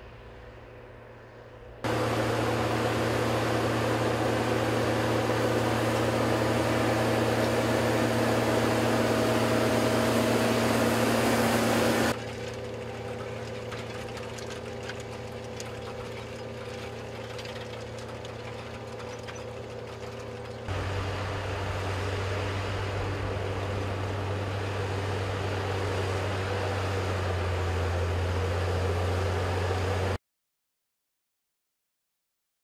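Farm tractor's diesel engine running steadily while pulling a potato planter through a field. It is heard in several cut-together shots: faint at first, abruptly louder about two seconds in, then quieter about twelve seconds in and louder again about twenty-one seconds in.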